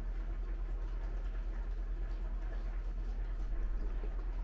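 Quiet room tone with a steady low hum and no distinct sound events.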